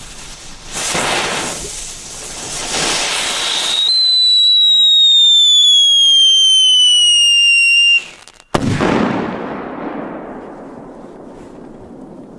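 Ground fireworks: hissing as one burns, then a shrill whistle that slowly falls in pitch for about four seconds. The whistle cuts off and one loud bang follows, dying away over the next few seconds.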